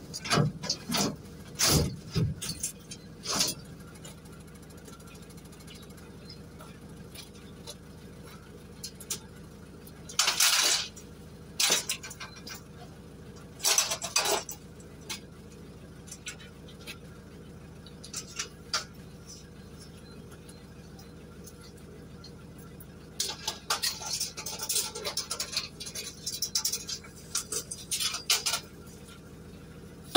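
Scrap metal being handled in the back of a van: scattered clanks and clinks of steel pieces knocking together, with a busier run of rattling and clattering near the end.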